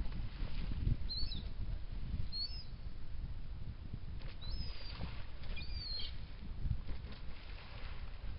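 Wind rumbling on the microphone, with four short, high-pitched seabird calls over it, each gliding in pitch. A splash near the start as a brown pelican plunges into the water.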